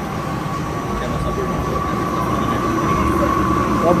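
Self-service GRIND peanut-butter grinder running while its button is held, a steady motor whine over a low grinding rumble as whole peanuts are milled into paste that pours into the cup.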